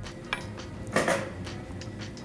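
Light cookware handling sounds: a small click about a third of a second in and a short scrape about a second in, over faint background music.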